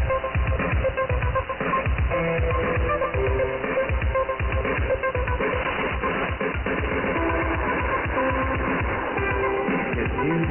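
Music with a steady beat from a shortwave pirate radio broadcast, received in upper sideband on 3220 kHz. The sound is thin and narrow, with nothing above the voice range.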